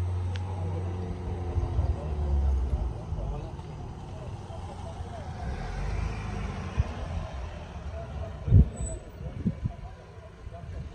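Van engines running at low speed: a steady low hum that eases off after about three seconds, with another low rumble later. A loud thump comes near the end.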